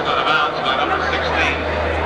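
Voices talking that are not picked out as words, over a steady low hum that grows stronger about a second in.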